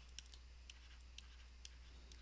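Faint ticks and light scratches of a stylus on a tablet screen as digits are handwritten, about two ticks a second, over a steady low electrical hum.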